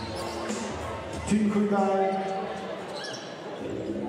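A basketball bounced on a hardwood court, a player dribbling at the free-throw line, with a voice carrying through the arena, loudest about a second and a half in.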